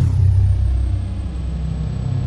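A loud, deep, steady rumble from the outro soundtrack, starting suddenly, with a faint high tone sliding down at its start.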